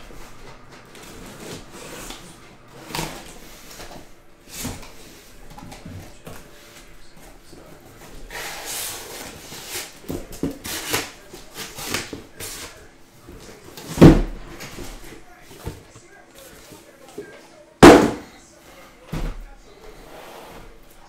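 Cardboard shipping case being opened and unpacked: scraping and rustling of the cardboard flaps and boxes, with scattered knocks and two sharp thumps, about two-thirds of the way in and again near the end, as boxes are set down on the table.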